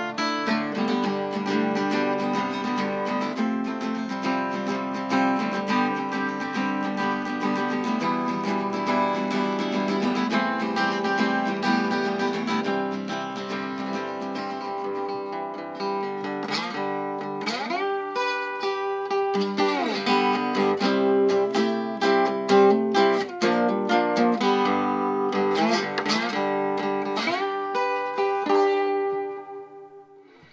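A Godin 5th Avenue archtop acoustic guitar with a Canadian wild cherry body, played solo with picked chords and single-note lines. About halfway through the playing switches to slide, with notes gliding up and down in pitch. Near the end it dies away on a ringing note.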